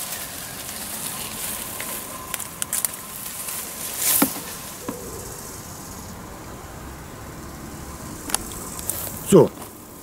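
Bees buzzing over a steady outdoor background hiss, with a few short sharp clicks or rustles, the loudest about four seconds in.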